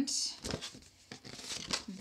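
Paper plate rustling and crinkling as it is handled and turned, with a soft knock about half a second in and a few light clicks and rustles after.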